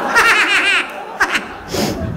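A person laughing in a quick, high-pitched run of ha-ha pulses during the first second, then a couple of short sharp sounds.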